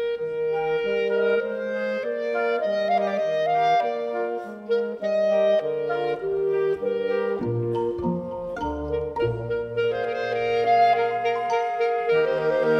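Small chamber orchestra of strings, flute and double bass playing: a held melody note sits over changing upper notes and a bass line that moves note by note.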